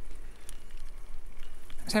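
A bicycle rolling along a concrete path, heard as a steady low rumble and hiss of tyre noise and wind on the microphone, with a few faint clicks.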